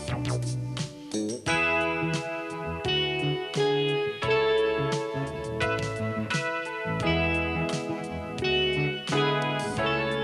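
A sequenced funk arrangement: a funk bass line split across several synth sounds (root notes, aggressive accents, bell-like tones, percussive synth and percussion) playing in a steady rhythm of sharp plucked notes, with keyboard and guitar synthesiser played live over it.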